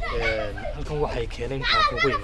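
Speech: people talking, with a high-pitched voice near the end.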